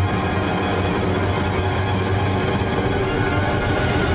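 Symphony orchestra with live electronics holding a dense, sustained texture of many steady tones over a strong, steady low hum.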